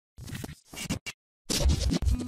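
Sound effects of a logo intro animation: three short swishing noise bursts, a brief gap, then a louder swoosh with a deep low hit from about a second and a half in.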